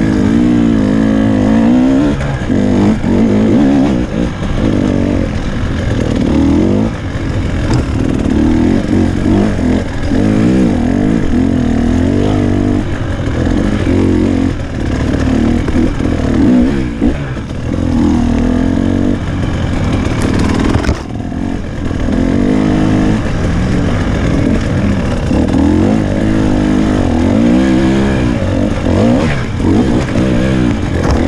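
Enduro motorcycle engine heard close up from the rider's point of view, its pitch rising and falling again and again as the throttle is opened and closed. It briefly drops off about two-thirds of the way through.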